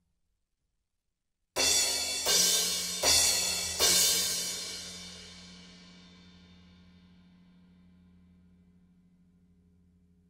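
Four crash hits on a drum kit's cymbals, about three-quarters of a second apart, struck a little more than a second in and left to ring out slowly. A steady low hum lingers under the fading cymbals. It is the low-mid resonance that the cymbal stands pass to the floor and that the toms' and snare's microphones pick up, here with no Cympad cymbal pads fitted.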